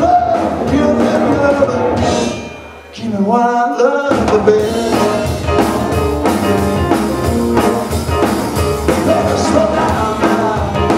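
Live rock and blues band playing: electric guitars, electric keyboard and drum kit. Near three seconds in the band briefly thins out to a rising run of notes, then the full band comes back in about a second later.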